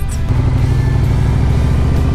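2020 Harley-Davidson Low Rider S's Milwaukee-Eight 114 V-twin, fitted with a Vance & Hines Big Radius exhaust, running steadily at cruising speed under the rider. Its low note shifts slightly about a third of a second in.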